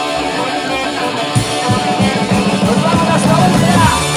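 Live rock band playing, electric guitars over drums.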